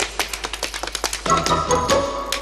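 Tap shoes striking a hard stage floor in rapid, uneven strings of clicks over show music; held chords in the music come in a little past halfway.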